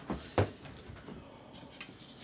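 A single short knock from something being handled, about half a second in; otherwise quiet.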